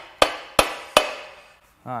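Hammer striking an engine's aluminium timing cover three times, about 0.4 s apart, each blow ringing briefly: the cover, stuck to the block and springing back, is being knocked loose.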